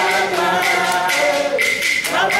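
A group of women singing a hymn together, unaccompanied, in held, sustained notes with a short break between phrases near the end.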